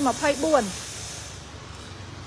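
A man's voice for the first moment, then a steady, faint hiss.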